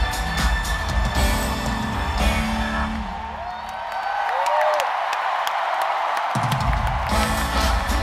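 Live electronic pop song played through a stadium sound system, heard from among the crowd, with a heavy bass beat. About three seconds in the bass drops out for roughly three seconds, leaving crowd cheering and whoops, then the beat comes back in.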